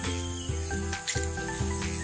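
Background music of sustained notes changing every fraction of a second over a bass line, with a steady high-pitched insect drone beneath it.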